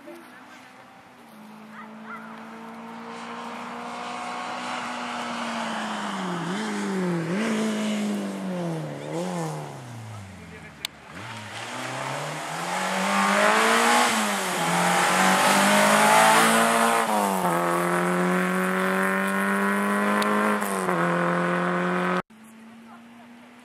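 Peugeot 205 rally car's engine on a special stage, first holding steady revs, then dropping in several dips with throttle blips as it brakes and shifts down for a tight bend. It then accelerates away hard, the revs climbing through three gear changes and the engine growing louder as it nears; a sharp click comes just before it pulls away.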